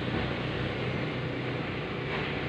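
A vehicle engine running steadily, a low even rumble under a wash of noise.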